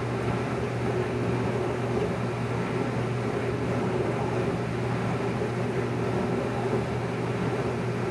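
Steady low hum with an even hiss over it, constant throughout with no distinct knocks or voices.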